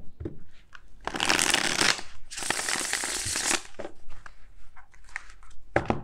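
A deck of tarot cards being shuffled by hand: two long rushes of cards sliding against each other, then a few lighter card clicks and a sharp knock near the end.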